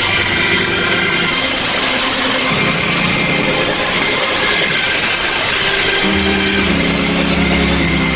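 Music heard through a shortwave AM radio signal under heavy static hiss. Held notes shift to new pitches about two and a half seconds in and again about six seconds in.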